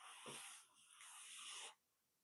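A person breathing close to the microphone: two breaths back to back, with a soft low bump about a quarter of a second in.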